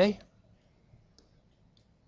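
Faint stylus clicks on a tablet screen during handwriting: a couple of light taps, one about a second in and one near the end, with near quiet between.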